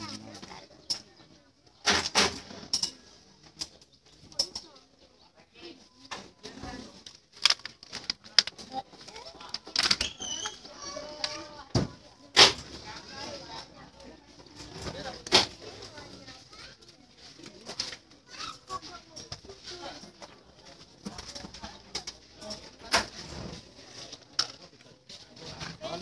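People talking in the background, broken by irregular sharp knocks and bangs throughout, the loudest about twelve seconds in.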